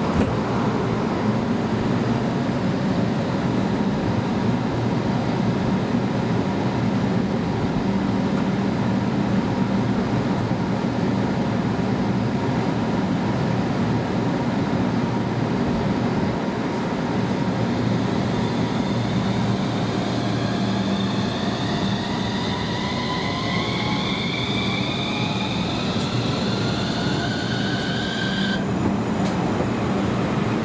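HU300 light-rail tram pulling away from the stop. A steady low hum runs throughout; from about two-thirds of the way through, a whine of several tones rises in pitch as the traction motors accelerate, then cuts off abruptly shortly before the end.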